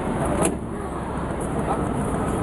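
Steady low rumble of an idling vehicle engine under outdoor voices, with a sharp click about half a second in.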